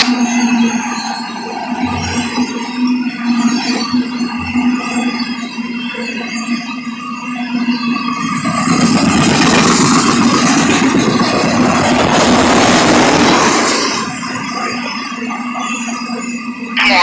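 A freight train of autorack cars rolling past, its wheels and cars making a steady rumble and rattle on the rails. The sound grows louder for several seconds in the middle, then drops back.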